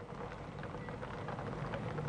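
A motor vehicle engine idling: a steady low hum under faint street noise, with a few light knocks.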